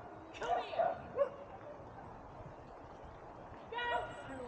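A dog yipping, several short high-pitched yaps in the first second and a half and another just before the end, with quiet outdoor background noise between them.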